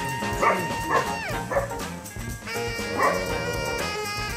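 A puppy giving about four short, high yips or barks over background music, the first three close together in the first couple of seconds and one more about three seconds in.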